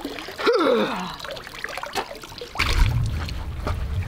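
A woman laughs once, breathily, about half a second in, over water trickling and splashing as she climbs out of a cold lake. A low rumble comes in during the last second or so.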